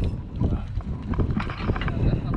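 Wind rumbling on the microphone on an open boat, with scattered irregular knocks and clicks.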